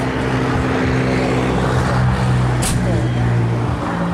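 A vehicle engine running at a steady idle, its pitch dropping slightly about two and a half seconds in, with a brief sharp click at the same moment.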